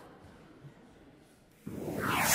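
Faint tail of a choir recording played back from a computer, dying away into near quiet. Shortly before the end, a sudden rush of hiss-like noise starts and grows.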